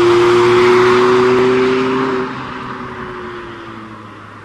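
Mazda MX-5 roadster's four-cylinder engine running at steady revs with tyre and road noise as the car passes and drives off. About halfway through, the engine note drops slightly in pitch and the sound fades as the car recedes.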